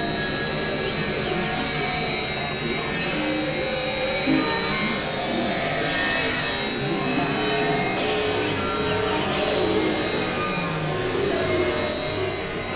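Experimental electronic synthesizer drone music: layered sustained tones, among them a steady high whistle, under hissing noise swells that rise and fade every few seconds.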